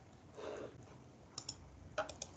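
Faint computer clicks: a quick pair about one and a half seconds in and another at the end, with a brief soft murmur about half a second in.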